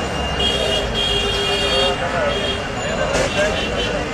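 Dense crowd hubbub: many voices talking and calling at once close around, with road traffic underneath. A high steady tone comes and goes through the first two and a half seconds.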